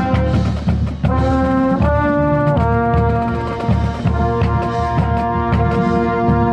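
Marching band brass playing loud sustained chords close up, with the trombone nearest, over a steady percussion pulse. The chords break off briefly about a second in, then move through two changes of chord.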